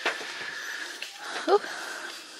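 A single short knock as an item is set down against the plastic cart, then a faint steady high hum under a drawn-out 'ooh'.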